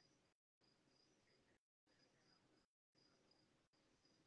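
Near silence, with a very faint, high cricket chirping in a steady pulsing rhythm, broken by a few brief dropouts.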